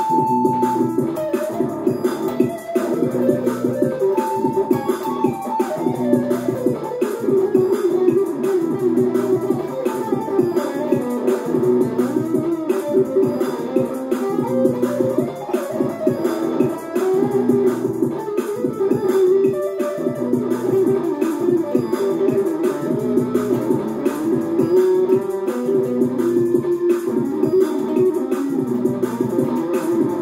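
Electric guitar played continuously, note after note, over a steady drum beat.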